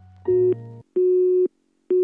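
Electronic beep tone in the style of a telephone busy signal: three steady half-second beeps about a second apart, as an error sound effect over colour bars, the first with a low hum under it.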